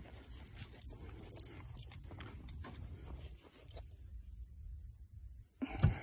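Faint scattered clicks and rustles over a low steady rumble, then a brief louder rustle near the end as a hand reaches into a scarifier's collection box and grabs a handful of scarified dead grass and thatch.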